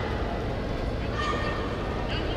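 Steady hubbub of a sports-hall crowd, with one short, high-pitched shout about a second in.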